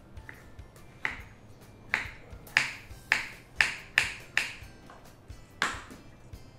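Small knife slicing a raw carrot into rounds on a wooden chopping board: about eight crisp cuts, quickening in the middle, with one last cut near the end.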